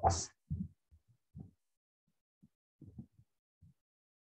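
A man's voice finishes a word, then near silence broken by a few short, faint low thumps spread irregularly over the next few seconds.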